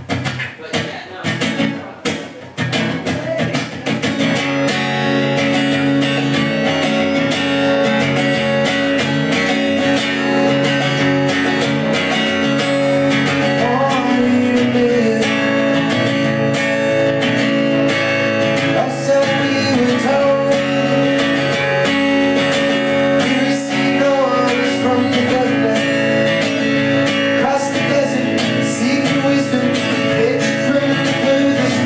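Acoustic guitar opening a song: a few separate, uneven strums in the first few seconds, then steady full strumming from about four seconds in.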